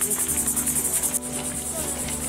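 High-pitched insect chirring in a fast, even pulse, which cuts off abruptly a little past halfway through. Steady low music continues underneath.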